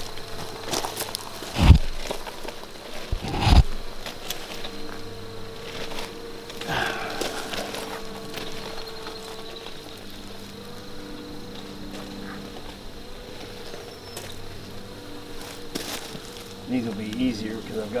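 Honey bees buzzing with a steady low hum from an opened nuc box of frames. Two sharp knocks about a second and a half apart near the start are the loudest sounds.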